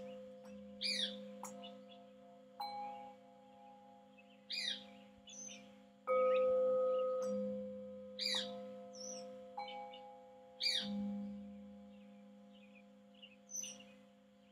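Metal singing bowls struck one after another with a small striker, each giving a clear ringing tone that fades slowly; bowls of several pitches sound together, and the loudest strike comes about six seconds in. A bird chirps over them with short sweeping calls every second or two.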